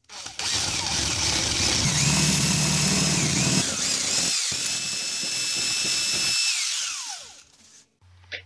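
Cordless drill enlarging the mounting holes in a car speaker's frame. It runs for about seven seconds with its motor whine dipping briefly twice, then winds down near the end.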